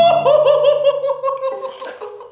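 A man laughing in a high voice: a held "ooh" that breaks into a run of quick laughs, fading toward the end.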